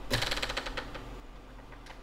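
A hand-spun DJI Phantom 4 propeller ticking rapidly against the ParaZero SafeAir parachute housing. The clicks fade out over about a second as the propeller spins down. They show that the loosely fitted parachute unit has enough play for the blade to strike it.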